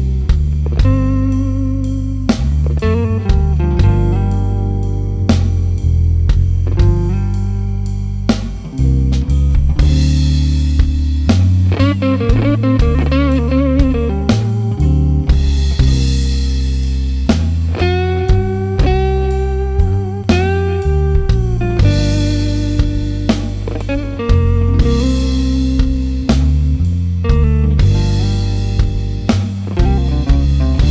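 Instrumental blues-funk from a guitar, bass guitar and drum kit trio, with no singing: a lead guitar line plays over a steady bass line and regular drum hits. The guitar's notes waver, and a little past the middle it holds several long bent notes.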